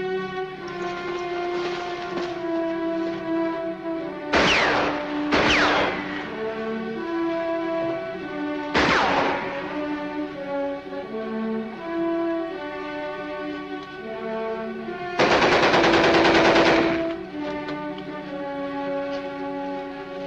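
Orchestral film score with sustained, shifting notes, broken by short blasts of gunfire about four, five and nine seconds in. A longer burst of rapid machine-gun fire lasts about two seconds past the middle and is the loudest sound.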